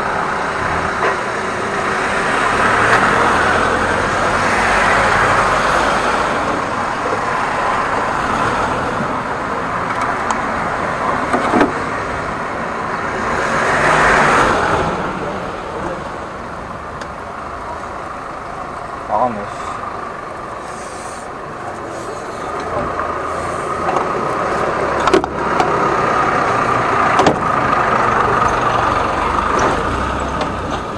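An engine running steadily beside a street, with vehicles passing now and then and a few sharp knocks near the end.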